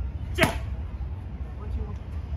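A boxing glove punch landing on a focus mitt: one sharp smack about half a second in, over a steady low rumble.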